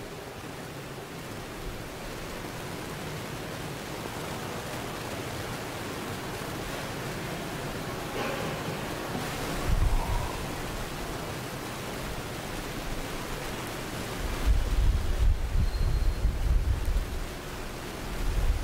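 A steady hiss of background noise with no speech, broken by short low rumbles about ten seconds in and again for a few seconds near the end.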